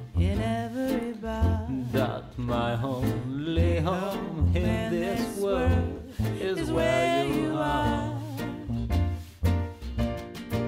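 Swing music from a small jazz combo: a wavering melody line over a steady, regular bass beat.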